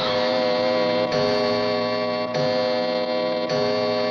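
Film background score: a held synthesizer chord, struck again about every second and a quarter.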